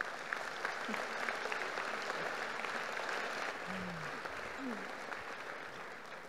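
Audience applauding, slowly fading toward the end, with a voice or two briefly heard from the crowd midway.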